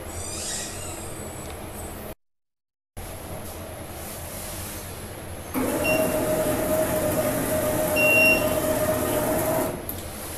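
A desktop DTG flatbed printer's platen drive running for about four seconds, a steady whine with a rattle, as the shirt tray travels along its rails. Fainter machine noise comes before it, broken by a second of dead silence.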